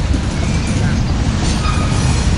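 Freight cars rolling past close by: a loud, steady low rumble of steel wheels on rail, with a few faint short squeals.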